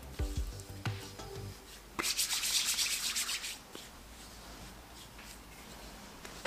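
Hands rubbing lotion into the skin, palms and fingers sliding against each other. A louder, rasping stretch of rubbing comes about two seconds in and lasts a second and a half, then the rubbing goes on more faintly.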